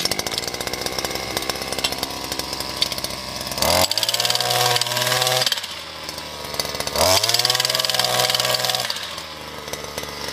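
Two-stroke petrol jack hammer catching on its pull cord and idling, then throttled up twice, about three and a half and seven seconds in, each time running at a higher pitch for about two seconds as it breaks into hard ground.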